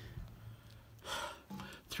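Quiet breathing sounds from a person: a short breathy exhale about a second in and a faint, brief voiced sound near the end, over a low steady hum.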